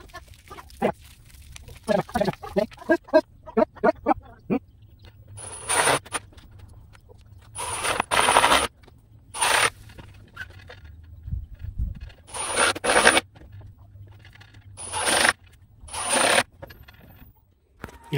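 Cordless impact driver running in six short bursts, driving screws that fasten hinges to a wooden cabinet door. The bursts come in the second half, each lasting a fraction of a second to about a second.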